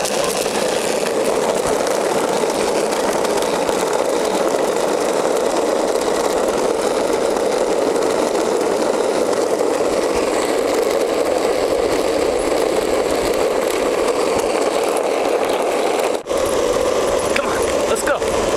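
Skateboard wheels rolling fast over rough asphalt, a steady rolling rumble that cuts out briefly near the end.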